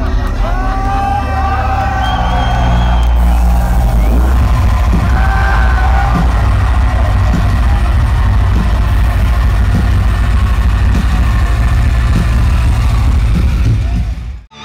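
Live heavy metal band through a festival PA, recorded close on a phone so the low end is heavily overloaded into a dense rumble. Crowd voices shout and yell over it, most clearly in the first six seconds.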